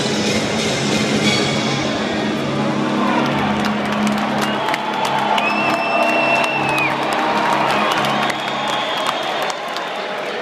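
Large arena crowd cheering over loud music from the arena sound system, the music dropping away near the end. A single held high whistle comes about five and a half seconds in.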